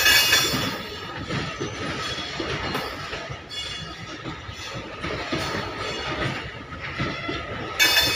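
Loaded freight wagons of a goods train rolling past, wheels clattering over the rail joints in a repeating rhythm, with a thin steady squeal of wheel on rail. The loudest clatter comes at the start and again near the end.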